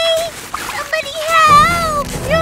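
A cartoon child character's voice crying out in wordless, gliding calls, with water splashing around the middle.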